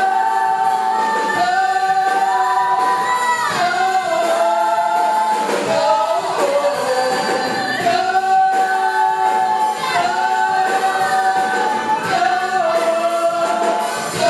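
Musical-theatre ensemble of male and female voices singing together in harmony, sustaining notes in short phrases that shift pitch every second or two.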